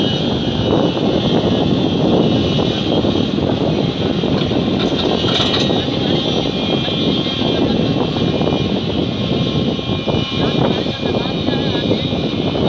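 SANY SY210 crawler excavator's diesel engine running steadily under load as it loads sand into a truck, with a steady high whine over the engine noise.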